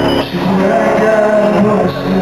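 Live pop band playing in a large arena, with a man singing a long held note with a wavering pitch over the music.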